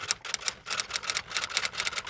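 Typewriter keystroke sound effect: a rapid, irregular run of sharp key clicks, several a second, as a line of text is typed out.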